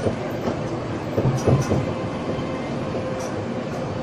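Dotto rubber-tyred road tourist train running along a street: a steady hum with a faint even whine, and a short cluster of rattling knocks about a second and a half in.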